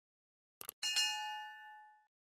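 Sound effect for a subscribe-button animation: a quick double mouse click, then a bright notification-bell ding that rings on and fades away over about a second.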